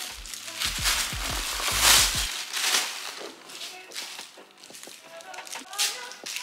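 Plastic packaging rustling and crinkling as a handbag is pulled out of its wrapping, loudest about two seconds in, with a few soft handling bumps in the first two seconds.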